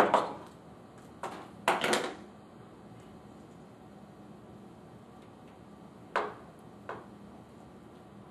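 A hand tool being handled and set down on a tabletop: a sharp knock, then a few more knocks over the next two seconds. Later come two fainter clicks as fingers work at the cable end.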